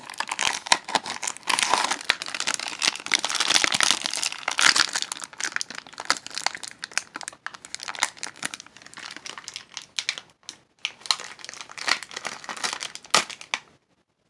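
A crinkly plastic blind-bag wrapper being crumpled and torn open by hand: a dense crackling that is busiest in the first few seconds, thins out later and stops shortly before the end.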